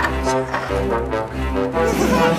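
Cartoon background music led by brass instruments over a steady bass beat.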